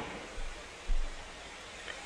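Quiet room tone: a faint steady hiss, with two soft low bumps about half a second and a second in.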